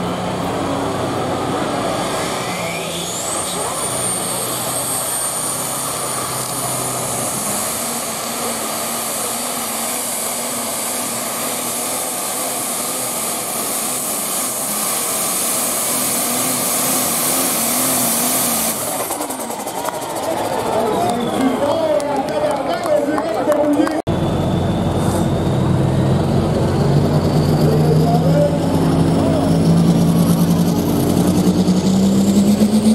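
Pulling tractors' engines running at full power under load as they drag a weight-transfer sled, with a high whistle rising a few seconds in. Near the end the sound changes to the steadier, lower note of a tractor engine at the start line.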